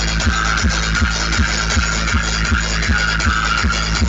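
Electronic dance music played loud through a truck-mounted DJ speaker stack, with a steady bass beat of about three beats a second.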